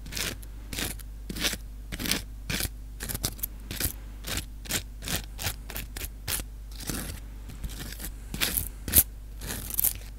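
Close-miked ASMR trigger sounds: a string of short, irregular scrapes and crackles at about two a second, the loudest one near the end. A faint low hum runs underneath.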